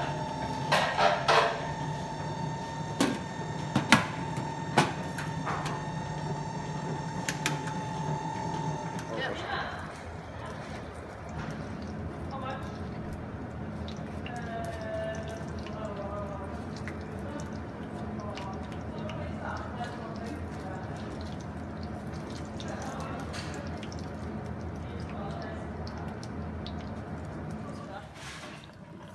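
Kitchen sounds: for the first nine seconds a pot of carrots in milk sits on the hob under a steady hum with a high whine, broken by a few sharp knocks. Then the sound changes to fishcakes frying on a flat griddle pan, an even sizzle with faint voices behind it.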